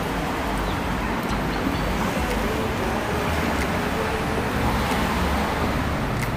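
Steady traffic noise from passing cars on a city street.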